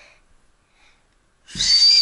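A small toy whistle blown once near the end, a loud high-pitched tone lasting under a second with breathy noise around it.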